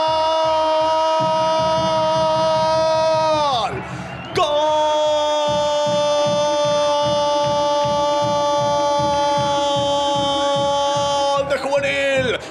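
A football radio commentator's long drawn-out goal cry ("gooool"), held on one pitch, sliding down and breaking for a breath about four seconds in, then held again for about seven more seconds. Under it a goal music jingle plays with a steady drum beat.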